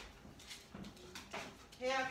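A few light clicks and knocks of things being handled in a kitchen, then a person's voice starting a drawn-out sound near the end.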